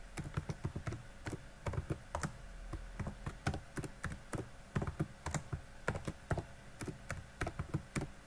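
Typing on a computer keyboard: irregular key clicks, several a second, as a short phrase is typed.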